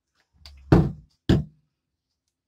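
Two loud knocks about half a second apart, the first preceded by a brief low rumble.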